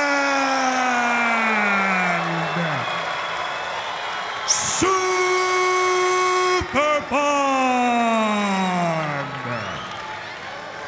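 A ring announcer's amplified voice drawing out a fighter introduction. A long held call slides down in pitch and fades, closing out 'Thailand'. After a short gap, a hissed start leads into a second long held call, 'Superbon', split in two, whose last part slides steadily down and fades out.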